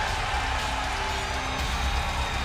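A wrestler's entrance music playing, with sustained held notes and a heavy bass, over the steady noise of an arena crowd.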